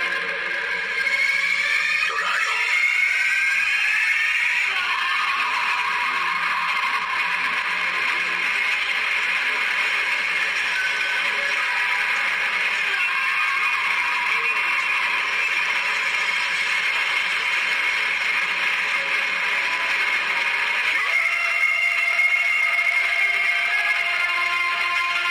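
Film soundtrack heard through a TV speaker: a dramatic background score with sweeping pitch glides in the first few seconds, then a dense, steady wash of sound that shifts a few seconds before the end.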